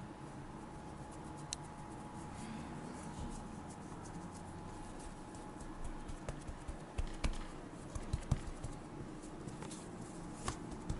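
Hands pressing and patting filled yeast-dough pies flat on a floured countertop: a run of short soft knocks and taps in the second half, over quiet room tone with a faint steady hum.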